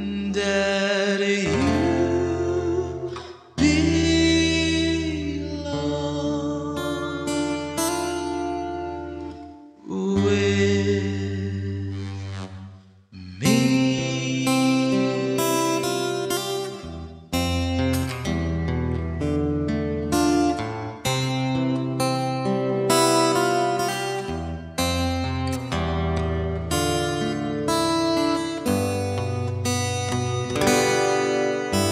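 Acoustic guitar playing a slow ballad with long held notes, joined by wordless singing that slides up into notes a couple of times. The music dips briefly between phrases.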